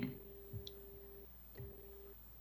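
A few faint computer clicks, from a keyboard or mouse, about half a second in and again later, over a faint steady electrical hum.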